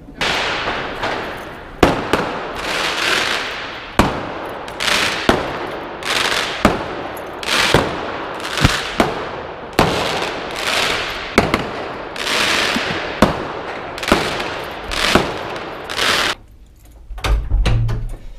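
Jacket fabric rubbing and scraping over a body-worn camera's microphone in swells about once a second as the wearer walks, with sharp knocks from the camera being jostled. It falls much quieter about sixteen seconds in, and a low thump comes near the end.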